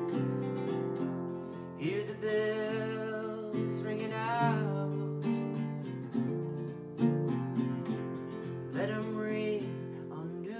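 Acoustic guitar strummed steadily in a song accompaniment, with a man's voice singing two sustained phrases over it, one about two seconds in and another near the end.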